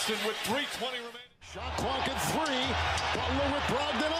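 Basketball TV broadcast audio: a commentator talking over arena crowd noise, with a brief dropout to silence about a second in.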